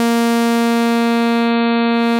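Serum software synthesizer holding one steady saw-wave note while its wavetable position is swept through a crossfade morph between a rounded-edge saw and a jagged saw. The tone keeps an even pitch and level, and its top end briefly drops out and returns just past halfway.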